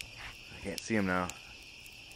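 A brief human vocal sound lasting about half a second, about a second in, over a steady high-pitched chirring background.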